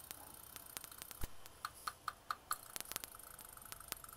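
Scattered sharp clicks and ticks over a faint steady high-pitched whine, with a short run of about five quick pulsed tones near the middle.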